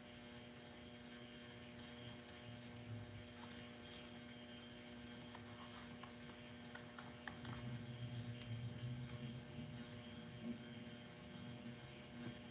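Faint steady electrical hum on the microphone line, made of several steady tones, with a few faint clicks and a faint low rumble in the second half.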